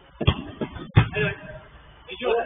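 Two sharp thuds of a football being struck, about three quarters of a second apart, the second the louder, with players' voices shouting briefly after it.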